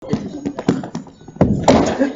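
A dancer's body, hands and sneakers thudding and knocking on a hard studio floor during a breakdance floor move, with a louder, longer burst of noise about one and a half seconds in. Voices are heard alongside.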